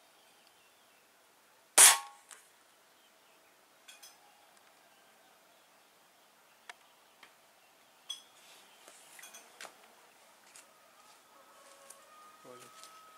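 Air rifle firing a single shot about two seconds in: one sharp crack with a short ring after it. A few faint clicks follow later.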